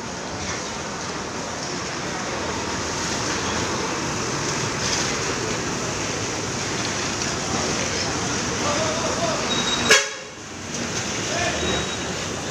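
Diesel bus engines running and moving past close by, a steady rumbling traffic noise that builds slightly as a coach draws alongside. About ten seconds in there is one sharp knock, the loudest moment, after which the level briefly drops.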